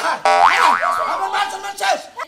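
Cartoon-style comedy sound effect: a springy boing made of repeated curving pitch glides with a wobbling rise and fall, over background music.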